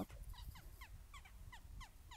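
An animal's short, high-pitched falling calls, repeated quickly at about five a second, faint.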